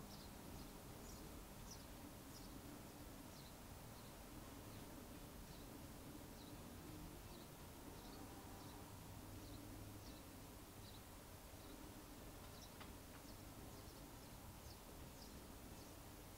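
Near silence: quiet room tone with faint, short high chirps repeating about every half second to second, and a light tick about three quarters of the way through.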